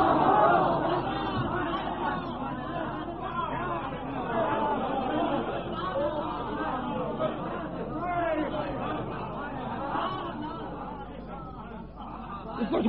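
An audience of many voices talking and murmuring at once in a hall, heard on an old lecture tape, fading off toward the end.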